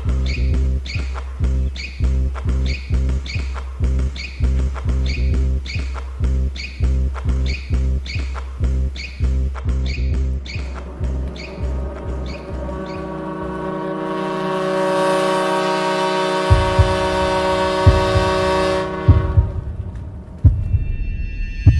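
Film soundtrack music: a steady beat of about two strokes a second over deep bass. It drops out after about thirteen seconds while a long, sustained chord swells louder, with low thumps under it, and then cuts off suddenly just before the end.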